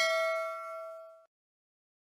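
Bell-like ding sound effect from an animated end-screen graphic, ringing on one clear pitch with higher overtones and fading away. It cuts off about a second in.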